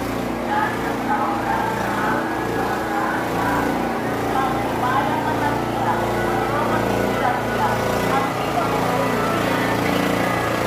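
Many indistinct voices of a crowd at once, over a small engine running steadily underneath.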